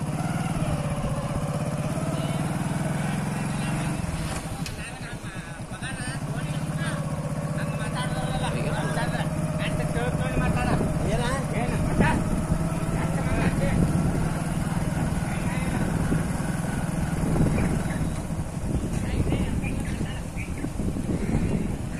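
Vehicle engine running steadily as it moves along a road, with indistinct voices over it.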